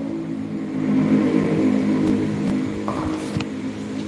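A motor vehicle engine running steadily, swelling about a second in and then slowly fading.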